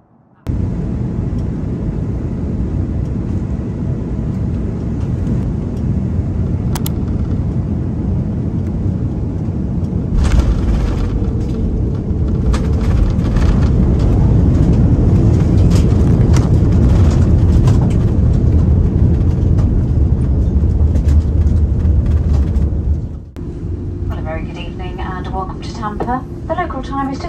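Airliner cabin noise in an Airbus A330-900neo landing: a steady low rumble of airflow and its Rolls-Royce Trent 7000 engines. About ten seconds in it grows louder and rougher as the wheels touch down and the aircraft rolls out on the runway. The rumble drops off sharply near the end, and a voice begins.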